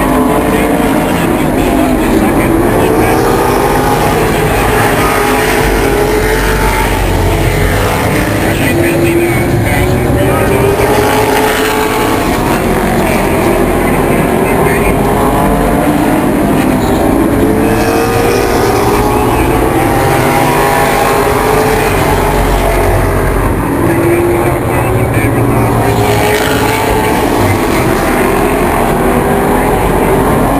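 Several late model stock car V8 engines racing around a short oval track. Their pitch rises and falls over a few seconds at a time as the cars pass and accelerate off the turns.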